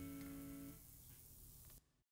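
Electric guitar's final chord ringing out and fading away, dying out under a second in. Faint hiss follows and cuts off near the end.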